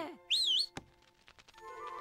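A short, high whistle with a wavering, warbling pitch about half a second in, like a cartoon bird call. A single click follows, then soft music with sustained notes comes in.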